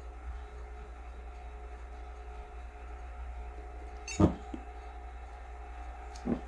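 Low, steady background hum, with a single short knock about four seconds in.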